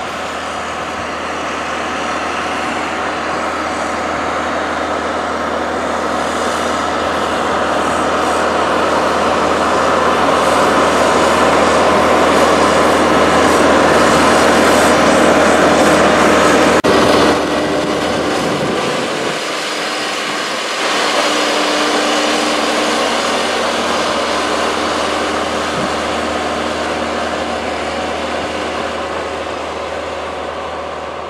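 John Deere 310 backhoe loader's diesel engine running under load as it pushes snow with its front bucket. It grows louder as the machine comes close, drops suddenly a little past halfway, then fades as it moves away.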